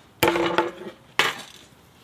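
A 16-ounce titanium hammer strikes twice, about a second apart, setting a nail held in its magnetic nail start into a wooden board; the first blow rings briefly.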